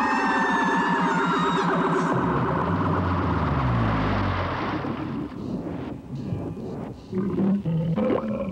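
Cartoon sound effects for a long fall into taffy: several pitched tones slide downward together over a fast rattling buzz and sink into a deep rumble as the bodies hit the taffy about four seconds in. After that comes a quieter stretch of scattered soft squishy noises from the sticky taffy.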